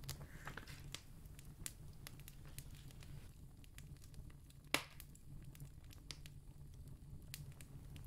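Quiet room tone with a faint low hum and scattered faint clicks, one sharper click a little before the middle.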